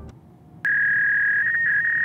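A single steady electronic beep, a pure high tone about a second and a half long, starting abruptly about half a second in, with a slight wobble in pitch near its end.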